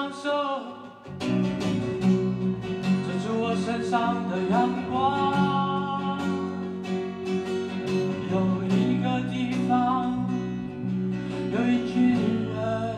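Live acoustic guitar strummed over an electric bass, with a man singing. The music drops briefly about a second in, then carries on.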